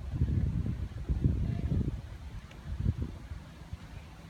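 Low, uneven rumble on the microphone, strongest in the first two seconds and quieter near the end.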